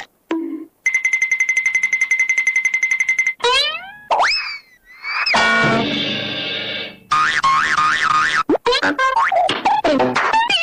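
A string of cartoon comedy sound effects. First a fast pulsing tone for about two seconds, then rising and falling boing-like glides. After that comes a held buzzy chord, then a run of quick bouncing chirps.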